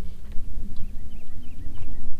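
Water lapping against a bass boat's hull under a loud, uneven low rumble of wind on the microphone, with a few faint short high chirps in the middle.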